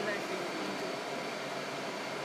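Steady cabin noise of a car driving slowly, a constant hiss of engine, tyres and ventilation heard from inside.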